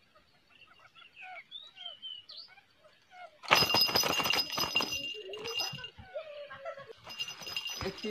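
Faint, scattered bird chirps, then about three and a half seconds in a sudden loud clattering and rattling with a ringing edge that keeps on, with voices breaking in over it.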